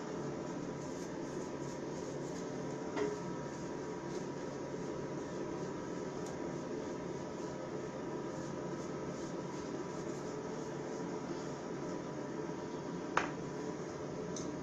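Steady hum and hiss of a small tiled room, with two short sharp clicks, about three seconds in and again near the end.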